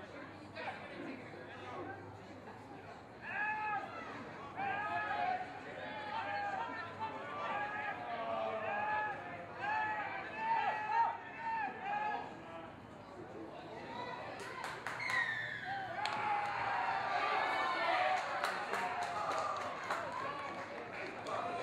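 Voices at a rugby scrum shouting a string of short calls, each rising and falling, one every second or less, then a denser burst of overlapping shouting near the end with a few sharp knocks.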